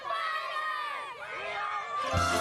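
A group of young children shouting and yelling together, several high voices overlapping at once.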